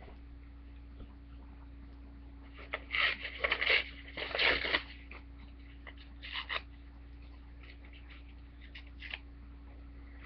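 Book paper being torn by hand in several short rips, the loudest about three and four and a half seconds in, with a faint steady hum underneath.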